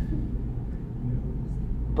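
Steady low rumble of room background noise, with no speech.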